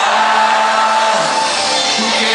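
Live cuarteto band playing an instrumental passage between verses, loud and steady, with held notes over the full band.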